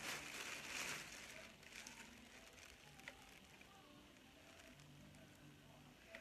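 Faint crackly rustling of a bag of angora fiber being handled, strongest in the first second or so, then near silence.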